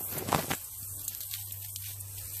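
Leaves of a passion fruit vine rustling as a hand moves through them: one brief louder rustle just after the start, then a few light crackles.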